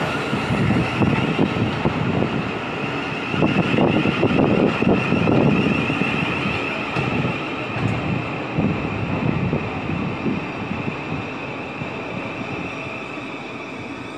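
Thameslink Class 700 (Siemens Desiro City) electric multiple unit running past the platform as it arrives and slows, with wheel-on-rail rumble and a steady high whine. The sound fades gradually as the train slows.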